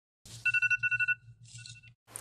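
iPhone alarm going off: a high beeping tone pulsing rapidly, about eight beeps a second. After about a second it drops much quieter, then cuts off just before the end.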